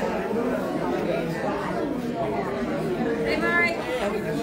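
Several people chatting at once in a large room, with a steady murmur of overlapping voices; one voice comes through more clearly near the end.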